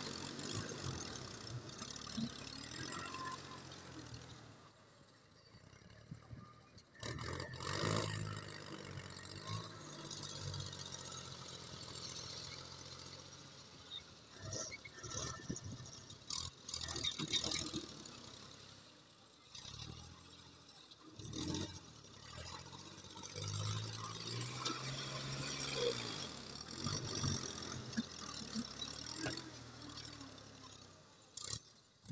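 Ford 4000 tractor engine revving up and easing off repeatedly as its front-end loader digs into sand, lifts and dumps the load, with clanks and rattles from the loader and bucket.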